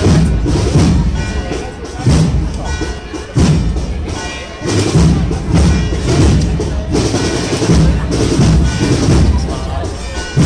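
Spanish processional marching band (agrupación musical) playing a Holy Week march: sustained cornet and trumpet melody over heavy bass-drum beats about once a second, with crowd voices underneath.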